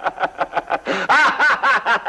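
A person laughing hard in a long run of quick, rhythmic 'ha' pulses, about seven a second, swelling louder about halfway through.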